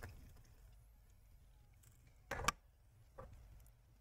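Mostly faint room hum, broken by one short knock about two and a half seconds in and a softer tap a second later: handling noise from hands and tools on the opened laptop's heatsink.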